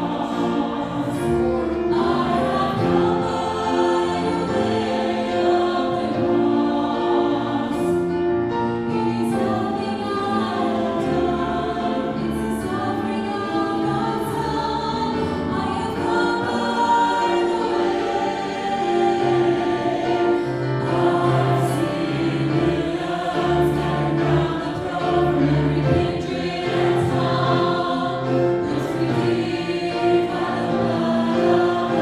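Mixed church choir of men's and women's voices singing a gospel song in held, full chords over steady low bass notes.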